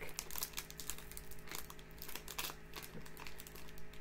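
Wrapper of a hockey card pack crinkling in the hands as it is handled to open it, a run of irregular soft crackles.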